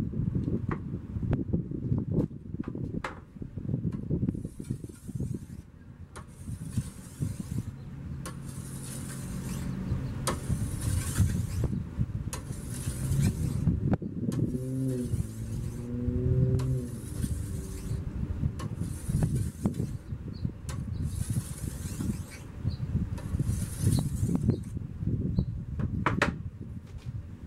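Oiled whetstone drawn by hand along a shashka saber's steel blade: about a dozen even rasping strokes, roughly one a second. A steady low rumble runs underneath, with a vehicle's engine note rising and falling for a few seconds midway.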